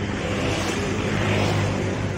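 Steady road traffic noise from vehicles passing on a busy road, with a continuous low engine hum.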